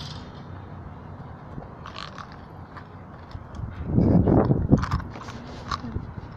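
Rustling, scraping handling noise and wind rumble on a phone's microphone held close to the face, with a louder burst of rustling about four seconds in.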